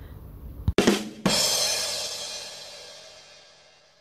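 Short musical outro sting: a couple of quick drum hits about a second in, ending in a cymbal crash that rings out and fades away over the following few seconds.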